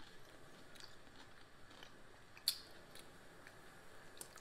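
Faint close-up chewing of a cucumber taco boat, with small wet mouth clicks and one sharper crunch about two and a half seconds in.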